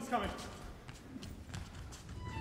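A man's spoken voice falling in pitch as it trails off right at the start, then quiet hall noise with a few faint knocks.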